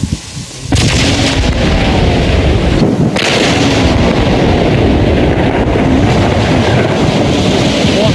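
Controlled detonation of a pile of unexploded artillery shells: a sudden blast about a second in, followed by a long, loud rumble that runs on for several seconds.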